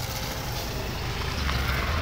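Outdoor street noise with the low, steady rumble of a motor vehicle engine close by, growing louder about one and a half seconds in.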